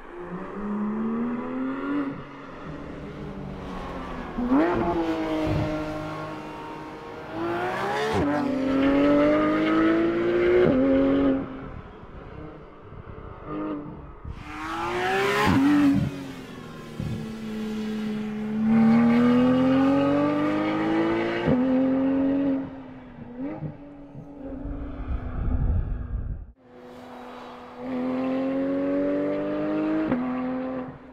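Porsche 911 GT3 RS's naturally aspirated flat-six engine pulling hard. Its note climbs and drops back sharply several times as it shifts up through the gears, with a quieter spell in the middle. Near the end the sound cuts off abruptly for about a second before the engine returns.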